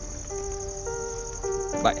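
Crickets trilling steadily in a high, fast-pulsing drone. Soft electric-piano music with held chords comes in a moment in.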